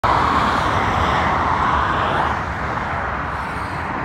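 Road traffic on a main road: cars passing, a steady rush of tyre and engine noise that eases a little after about two seconds.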